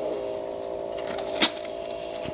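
Built-in thermal strip printer of a Datascope Spectrum OR patient monitor running, feeding out paper with a steady whine. About a second and a half in comes a sharp crack as the printed strip is torn off.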